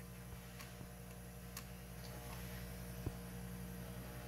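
Steady low electrical hum with a few faint, scattered clicks and taps as tools are handled against a solenoid's wire terminals.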